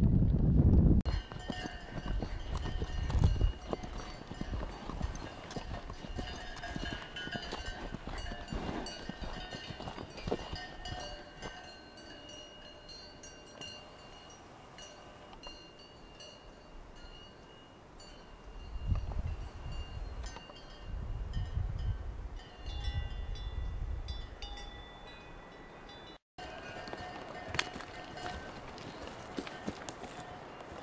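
Outdoor ambience with wind buffeting the microphone in a few gusts, under steady bell-like ringing tones that come and go. After a break near the end, faint hoof knocks of horses walking begin.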